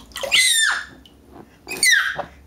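Baby squealing with delight: two high-pitched squeals that fall in pitch, the second coming near the end.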